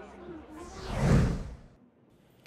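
Whoosh transition sound effect, about a second long, swelling to a peak just past the middle and sweeping down in pitch before it cuts off.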